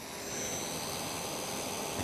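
Craft heat tool blowing steadily: a continuous rushing whir of its fan and hot air, with a faint high whine.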